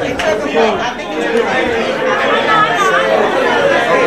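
Several people talking over one another: indistinct overlapping chatter.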